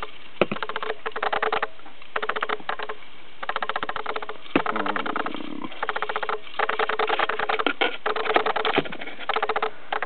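Feeder crickets chirping in repeated bursts, each about a second long, with short gaps between.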